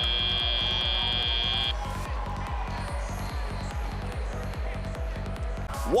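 End-of-match buzzer on a FIRST Robotics Competition field: a steady high tone that cuts off suddenly nearly two seconds in. It plays over arena music with a steady beat that runs on after it.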